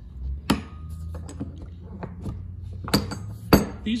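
Steel dies of a hand-operated button-making press clinking and knocking as they are moved on the press's base, with three sharp metal knocks, the loudest about three and a half seconds in, over a low steady hum.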